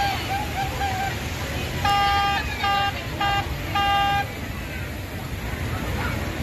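A single-pitched horn tooting in a rhythm: one long toot about two seconds in, two short ones, then a longer one, over steady outdoor crowd noise.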